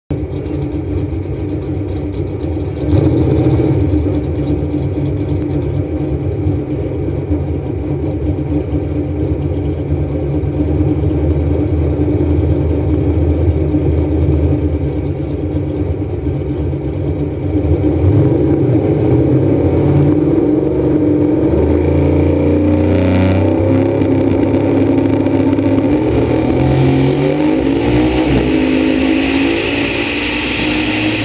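Drag race car's engine running throughout, heard from the hood. In the second half its pitch climbs in several rising sweeps, a full-throttle pass through the gears, and eases off near the end.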